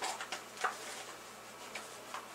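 A few faint, light clicks and crackles from a cardboard Pocky box being handled and opened, the clearest about two-thirds of a second in.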